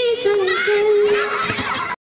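A woman singing, holding a long wavering note, with more voices coming in over it in the second half; the sound cuts off abruptly at the end.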